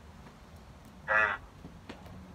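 A pause in speech broken by one short voiced syllable from a person about a second in, over a faint steady background hiss.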